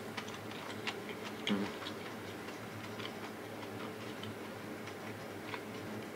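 Someone chewing a mouthful of fried rice: faint, irregular small clicks and smacks from the mouth, now and then a light touch of the spoon.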